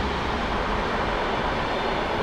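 A train passing close by on the track, with a steady rumbling noise.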